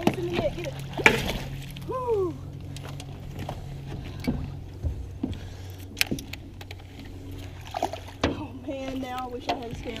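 Steady low hum on a small fishing boat, with scattered knocks and clatter of gear and handling against the boat deck.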